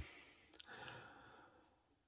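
Near silence, with a faint breath taken about half a second in, just after a small click.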